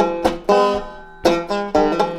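Resonator banjo being picked between sung lines: a few ringing notes, a short lull as they die away, then the picking picks up again. The player calls the banjo out of tune.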